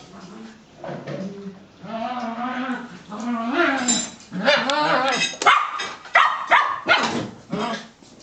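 A dog vocalizing: long, wavering calls for the first few seconds, then a quick run of short, sharp barks and yips from about four and a half seconds in.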